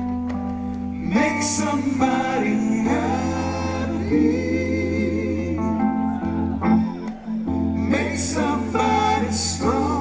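Live band music with a man singing: a slow passage of held chords over a steady bass, the voice line wavering and gliding.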